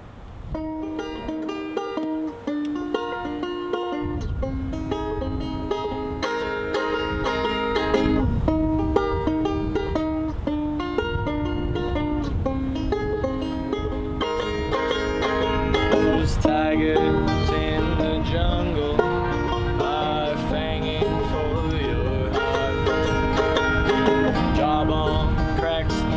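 Banjo and acoustic guitar playing an instrumental intro, picked notes in a steady bluegrass-style rhythm. The sound grows fuller about four seconds in and again about sixteen seconds in.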